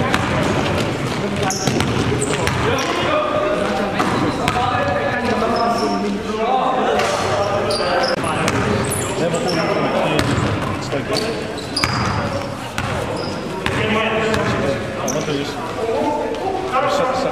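Live basketball game sound in a gym: a basketball bouncing on the hardwood court, sneakers squeaking in short high chirps, and players' voices calling out, all echoing in the hall.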